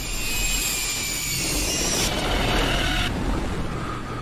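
A loud, steady rushing roar with a deep rumble underneath. The high hiss in it cuts off suddenly about three seconds in, leaving the low rumble.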